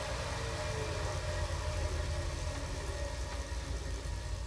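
Three-roller bicycle trainer spinning at high speed under a road bike's tyre, a steady low drone.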